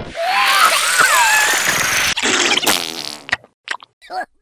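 Cartoon larva's squeaky, warbling vocal noises over a hissing sound effect with a thin falling whistle, then a lower buzzing voice sound about two seconds in and a couple of short clicks.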